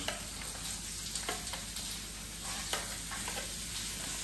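Scissors cutting thin clear plastic packaging: a few faint snips and crackles, about one to two seconds in and again near the end, over a steady hiss.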